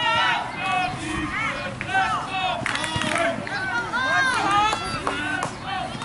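Several voices shouting and calling out over one another, high-pitched and not clearly worded, with the hubbub of a small outdoor crowd.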